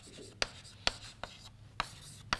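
Chalk writing on a blackboard: a string of sharp, brief taps and strokes as letters are written, about four strong taps in two seconds.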